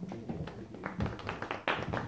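Audience clapping: scattered claps that build into fuller applause about a second in.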